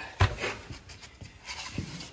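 A single sharp knock about a quarter second in, then faint scattered taps and handling noise.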